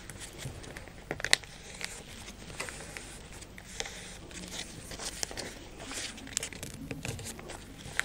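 Folded craft paper being pressed and creased by hand on a table: scattered crinkles and rustles, with a sharp crackle about a second in.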